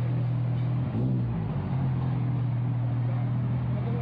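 A steady low hum that keeps an even pitch throughout, over a faint wash of background noise.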